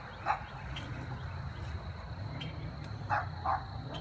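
A dog barking: one short bark just after the start, then two quick barks close together near the end.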